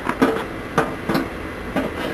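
Scattered knocks and clinks, about five sharp ones spread over two seconds: tools and coal being shifted as a knife blade is covered back over in a coal fire to keep heating.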